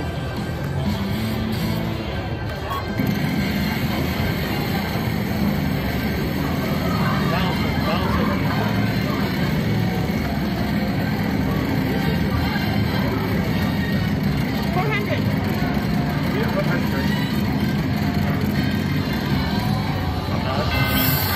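Wheel of Fortune Gold Spin slot machine playing its bonus-spin music while the top wheel turns, louder from about three seconds in, over casino background noise and voices.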